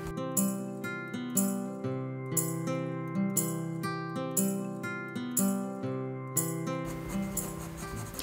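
Background music of plucked acoustic guitar, notes picked about twice a second; it stops about seven seconds in.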